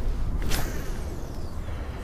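A cast with a fishing rod spooled with braided line. About half a second in there is a sharp swish, then the line runs out with a faint whine that slowly falls in pitch, over a steady low rumble.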